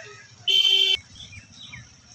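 A single steady, buzzy pitched tone lasting about half a second, starting and stopping abruptly, followed by a few faint short chirps.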